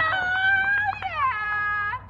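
A spectator's long, drawn-out cheering yell in a high voice with no clear words: one high held note, dropping about a second in to a lower held note.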